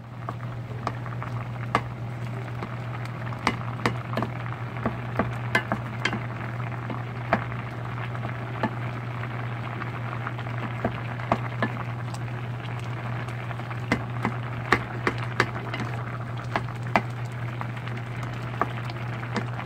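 Sweet pumpkin pieces boiling hard in a pot, the bubbling liquid giving a steady hiss dotted with many irregular pops and clicks, while a wooden spatula stirs through them. A steady low hum runs underneath.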